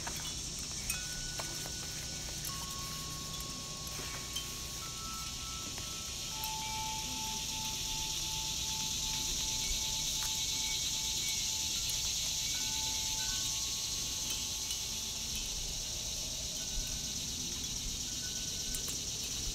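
Soft ambient background music of sustained chime-like tones, each held for several seconds before the next comes in, over a steady high hiss.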